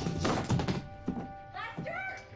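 A pump shotgun falling and clattering onto a wooden floor: a quick run of hard thunks in the first second. Steady background music plays under it, and a short voice-like sound comes near the end.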